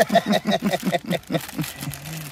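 A man laughing: a rapid, even run of short 'ha' pulses, about six a second, each falling in pitch, tailing off near the end.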